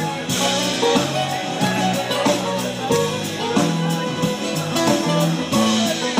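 Live band music from a string band: strummed acoustic guitars and plucked strings over a bass line and a steady beat.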